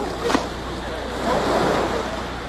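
Sea waves washing steadily, with a short sharp sound about a third of a second in.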